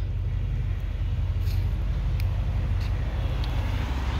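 Chevrolet Impala SS's V8 engine idling, a steady low rumble.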